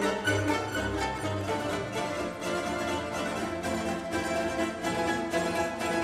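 Mandolin orchestra, with mandolins, guitars and double bass, playing a concert piece: many quick plucked notes sounding together, with low bass notes standing out in the first second or so.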